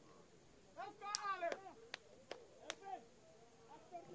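Faint shouts from footballers on the pitch, with three short, sharp snaps about half a second apart in the middle.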